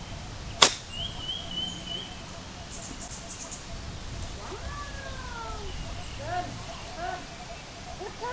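A golf iron striking the ball from broadleaf grass: one sharp, clean click of club on ball, less than a second in.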